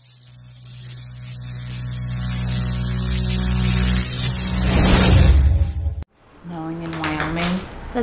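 Logo-intro sound effect: low steady droning tones under a rising hiss that swells steadily louder, then cuts off abruptly about six seconds in.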